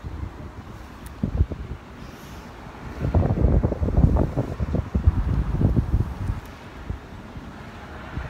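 Wind buffeting a phone's microphone in low, uneven gusts that are strongest through the middle.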